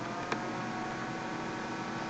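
Steady background hiss with a faint electrical hum, and one faint click about a third of a second in.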